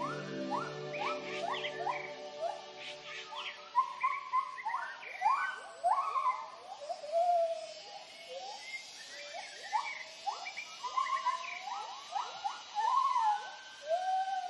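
White-handed gibbons giving their territorial hooting call: a run of rising whoops, short and evenly spaced at first, then longer, wavering notes that overlap, from more than one animal. A low held music tone fades out in the first few seconds.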